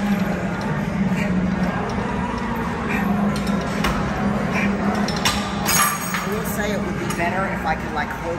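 Gym ambience: a few scattered metal clinks and knocks from weights over a steady low hum, with faint background voices.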